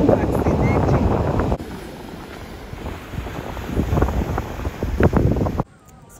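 Wind blowing across the microphone, heaviest in the first second and a half, then weaker gusts. It cuts off suddenly near the end.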